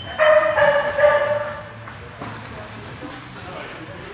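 A dog gives two drawn-out, high-pitched cries in quick succession during the first second and a half, then falls quiet.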